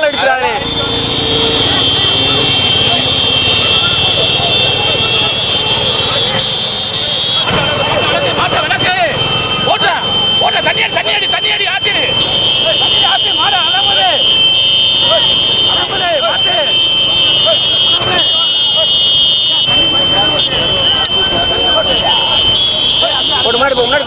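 Men shouting over the engines of a pack of motorcycles riding behind a racing bullock cart, with a steady high horn-like tone held under the shouting.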